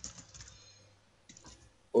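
Typing on a computer keyboard: a quick run of light keystrokes, a short pause about a second in, then a few more keys.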